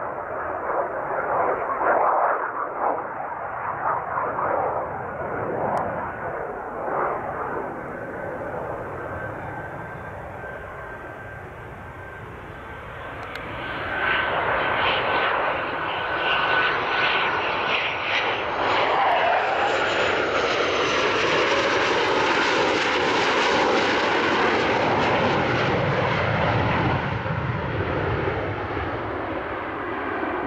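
McDonnell Douglas F/A-18 Hornet's twin jet engines as the fighter flies by low. The noise eases off, then builds about fourteen seconds in and stays loud, with a sweeping, falling tone as the jet passes.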